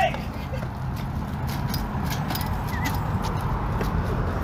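Small hard wheels of two taped-together dollies rolling over rough asphalt: a steady rumble with scattered clicks and clatter.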